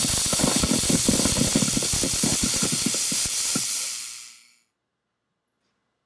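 Spool-gun MIG welding arc on thick aluminum from a Hobart IronMan 230: a steady hiss with a crackle. The thick metal has warmed up over earlier passes, so the arc is starting to settle down and run smooth. The arc fades out about four seconds in.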